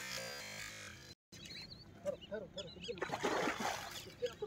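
Keyboard background music that cuts off about a second in. Then short chirping bird calls and a burst of water splashing as a hooked snakehead (murrel) thrashes at the water's edge.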